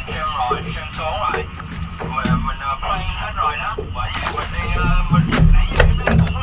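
Indistinct voices talking over a steady low rumble of wind on the microphone, with a few sharp clicks in the second half.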